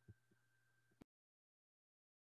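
Near silence: faint steady hum with a few tiny soft blips, then the audio cuts to complete digital silence about a second in.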